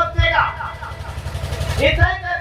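A man speaking Hindi into a handheld microphone in short phrases, with a pause in the middle, over a steady low rumble.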